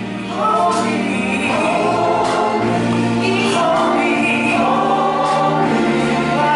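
Gospel choir of mixed men's and women's voices singing, swelling louder about half a second in.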